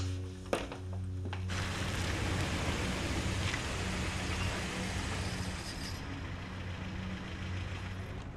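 A single click about half a second in. From about a second and a half, a beige Lada Samara three-door hatchback drives up and stops, heard with steady street noise that slowly fades. A low, steady background music tone runs underneath.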